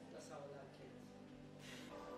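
Faint, indistinct speech over quiet background music.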